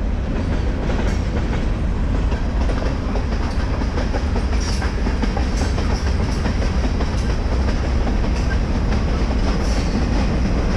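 Freight train passing close by, its boxcars rolling past with a loud, steady rumble and repeated clacks of the wheels over the rails.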